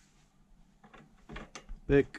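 A 17 mm steel socket being slid into a filed-out BMX peg onto the axle nut to test the fit: a few light metallic clicks and scrapes starting about a second in.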